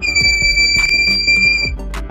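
Small piezo buzzer of a homemade 9-volt battery door alarm sounding one long steady high-pitched tone, cutting off near the end: the alarm has been triggered.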